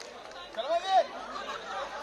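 Background chatter of a gathered crowd, with one voice calling out briefly about half a second in.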